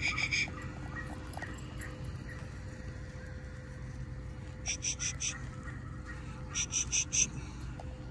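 A bird calling in quick groups of three or four high chirps, three times: once at the start, once about five seconds in and once about seven seconds in, over a faint steady hum.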